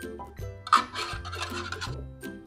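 Wire whisk scraping and stirring through flour and coconut cream in a glass bowl, a rough scratching lasting about a second, over background music.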